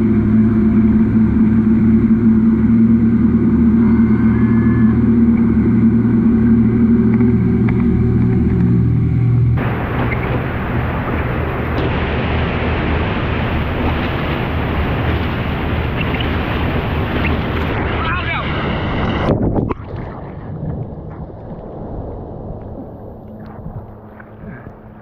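Suzuki outboard motor running steadily at planing speed, with the churn of its wake. About ten seconds in it gives way suddenly to a loud rush of water and wind as the board rides the wake. That rush cuts off a little before twenty seconds, leaving quieter water sloshing.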